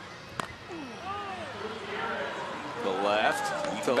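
A single sharp crack of the bat hitting a pitched baseball about half a second in, followed by the ballpark crowd cheering and shouting, growing louder as the ball carries.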